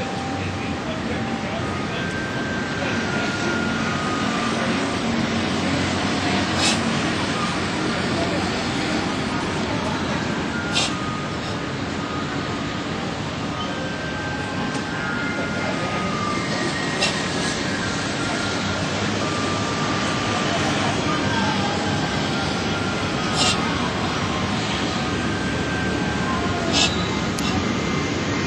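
Steady outdoor city background noise like distant traffic, with faint snatches of voices and a few sharp clicks spread through it.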